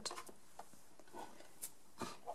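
Quiet handling of a Big Shot die-cutting machine being shifted on a craft mat: a few faint ticks, then a single short click about one and a half seconds in.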